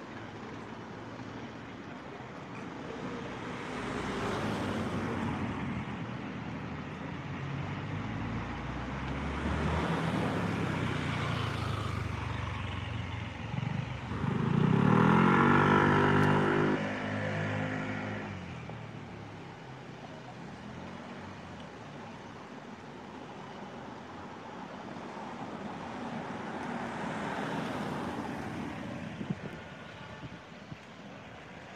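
Cars driving past on a quiet residential street, their sound swelling and fading several times. The loudest, about halfway through, is an engine accelerating, its pitch rising as it pulls away.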